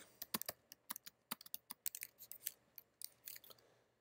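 Faint typing on a computer keyboard: a run of quick, irregular keystroke clicks.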